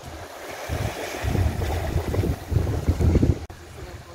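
Wind buffeting the microphone in irregular gusts that pick up about a second in, over the steady wash of small sea waves on a pebble and rock shore.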